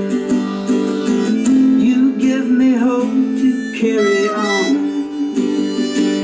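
Harmonica (blues harp) playing a melodic instrumental break with bent notes, over steady guitar chords.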